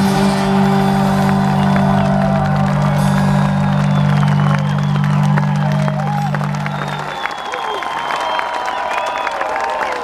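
A rock band's final chord rings out steadily and cuts off about seven seconds in. Through it and after it, a large concert crowd cheers and claps.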